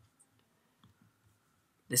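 A few faint computer mouse clicks in near silence.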